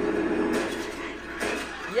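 Television drama audio: a crowd of voices shouting in commotion, with a held voice or tone fading out early and two short swells of noise.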